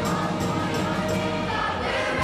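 A young girl singing into a handheld microphone with a group of young singers, over musical accompaniment with a steady beat.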